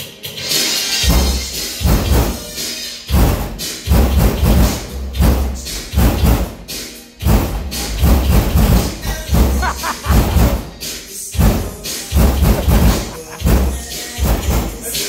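A song played loud through a car audio system's subwoofers in a bass test, with deep bass hits landing about every second under the drums and cymbals.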